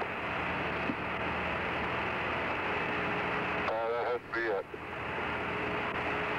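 Apollo 14 air-to-ground radio link hissing with static and a faint steady hum, with a short snatch of a voice coming through about four seconds in.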